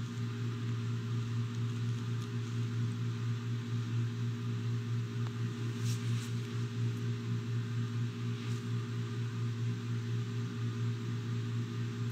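Steady low electrical or mechanical hum over a light hiss, unchanging throughout, with a couple of faint clicks about halfway through.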